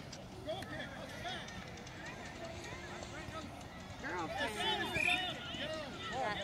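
Distant voices of young soccer players and sideline spectators calling and shouting across an open field, with short high-pitched calls that become louder and more frequent about four seconds in.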